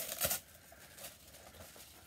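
Tissue paper rustling and crinkling as it is pulled off a boxed figure, mostly in the first half second, then only faint handling sounds.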